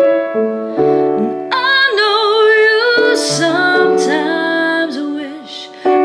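A woman singing solo to her own instrumental accompaniment, holding long notes with vibrato. A sustained chord sounds at the start, and her voice comes in about a second and a half in, easing off briefly near the end.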